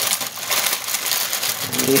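Plastic ramen noodle wrapper crinkling and rustling as it is torn open and handled, with the hand-broken dry noodles crunching inside, in irregular crackles.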